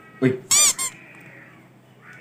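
A short high-pitched vocal squeal about half a second in, rising then falling in pitch, followed at once by a second, shorter one.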